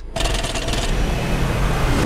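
Small propeller plane's engine noise in a film soundtrack: a loud, steady rush with a low rumble underneath, its hiss thinning out toward the end.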